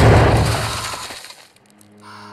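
Loud crash with a low rumble that fades away over about a second and a half: a sound effect of the hatch implosion's aftermath on the TV episode's soundtrack.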